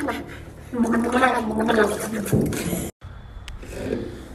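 A boy gargling and gurgling with his head held down in a bucket of water, acting out a drowning. His voice holds one pitch for about a second and a half, then the sound cuts off abruptly about three seconds in.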